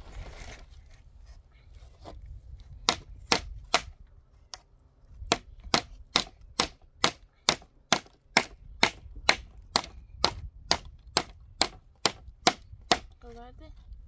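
Hammer blows on a wooden pallet: three strikes about three seconds in, then a steady run of blows, about two a second, from about five seconds in until shortly before the end.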